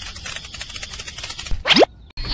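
Added cartoon sound effects: a steady, rapid scratchy rattle, then about a second and a half in a short whistle-like tone that slides sharply upward.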